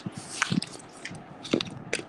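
Handling noise: a phone and the paper pages of a spiral notebook being moved about, with rustling and a few sharp knocks, about half a second in, around one and a half seconds in and again near the end.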